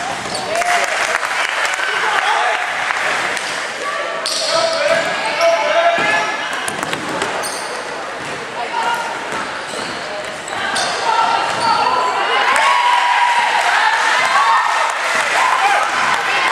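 Basketball game in a large gym: a ball bouncing on the wooden court amid footfalls, with voices of players and courtside people calling out, echoing in the hall.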